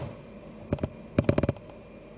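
Rolling pin knocking against a stainless steel worktop: two light knocks just under a second in, then a quick run of about six knocks half a second later.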